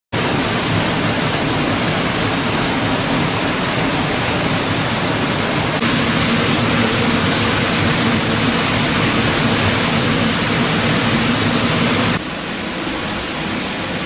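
Water gushing and splashing steadily into the stone pit beneath an old water mill, a loud unbroken rush. It turns quieter for the last two seconds.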